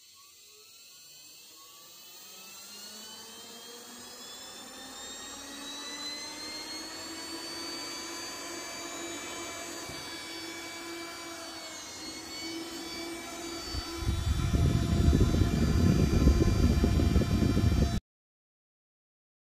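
A PC case fan driven by a brushless DVD-drive spindle motor through a speed controller, spinning up with a whine that rises in pitch over the first several seconds and then holds at high speed, drawing about 2 A at 8 V. From about 14 s in, a loud rush of air from the fast-spinning blades takes over.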